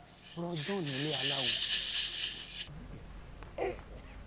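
Leaves and bushes rustling as a person pushes through foliage: a dense, scratchy rustle lasting a little over two seconds that cuts off abruptly.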